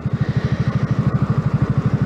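Yamaha MT-125's single-cylinder four-stroke engine running steadily at low revs, a rapid even pulse of about twenty beats a second, with a light hiss of wind and road noise over it.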